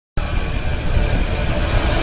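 Intro soundtrack sound effect: a loud, dense rumble that starts abruptly just after the beginning and holds steady, heaviest in the low end.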